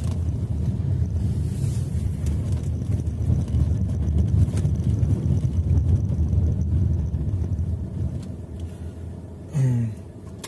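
Steady low road and engine rumble inside a diesel car's cabin while driving, dying down near the end. A brief vocal sound comes just before the end.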